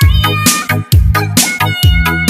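Disco dance remix music with a steady kick drum and bass about two beats a second, and high synth or vocal notes, some sliding up in pitch.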